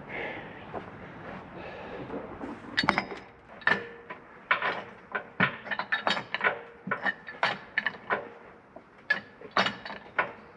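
Irregular metal clicks and clinks of a hand spanner working on the hydraulic fittings of a tractor-mounted hedge cutter, two or three a second, starting about three seconds in.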